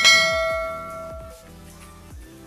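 A bell-like chime struck once, ringing and fading out over about a second and a half, over background electronic music with a steady beat.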